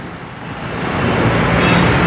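An auto-rickshaw's small engine running close by in street traffic, with a steady low note that grows louder over the first second and then holds.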